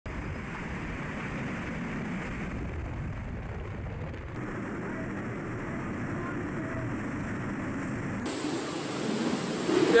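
Category 5 hurricane wind and driving rain: a steady rushing noise whose character changes abruptly twice, about four and eight seconds in.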